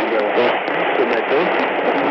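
Shortwave AM broadcast of Radio France Internationale on 7205 kHz, from the 500 kW Issoudun transmitter, heard through a Sony ICF-SW77 portable receiver's speaker. A voice talks under heavy, steady static hiss, with the narrow, muffled sound of long-distance shortwave reception.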